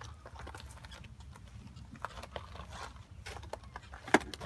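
Window strip washer (mop) scrubbing wet, soapy glass in short, irregular scratchy strokes, with a few clicks of tool handling.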